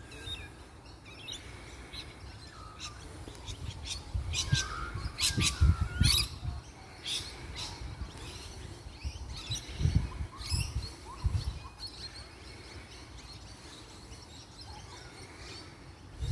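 Birds chirping and calling, a string of short chirps and sharper calls that are thickest in the middle seconds. Bursts of low rumble on the microphone come about five and ten seconds in.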